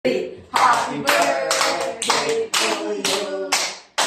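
A small group clapping in time, about two claps a second, with several voices singing along.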